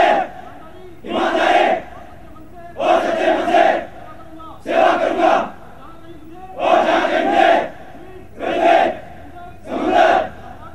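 Many men's voices shouting together in unison: short, loud massed cries repeated about every two seconds, each under a second long, typical of soldiers' war cries or slogans called out in formation.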